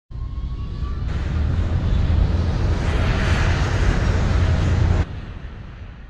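Logo-intro sound effect: a loud, low rumble with a rushing hiss over it, building toward the middle, then dropping sharply about five seconds in and fading out just after.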